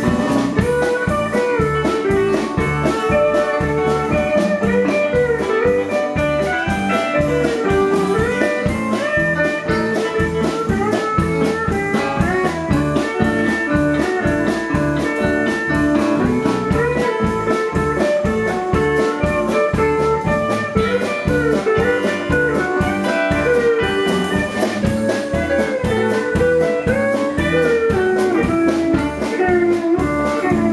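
Live country band playing an instrumental break with no singing: electric guitar lead and pedal steel guitar with gliding notes over bass and drums on a steady beat, with acoustic guitar.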